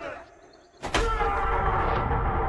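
Horror-film soundtrack: a brief quiet dip, then a sudden loud hit just under a second in, followed by a held, ringing tone.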